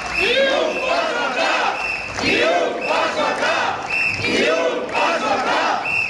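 A crowd of demonstrators chanting a slogan together in repeated shouted phrases, with short high-pitched tones sounding several times over the voices.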